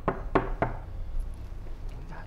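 Knocking on a front door: three quick raps in the first second, then it stops.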